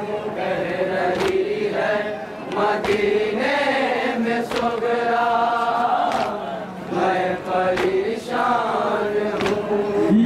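A group of men chanting a Shia nauha (lament) in unison, with sharp hand-on-chest matam slaps keeping a steady beat.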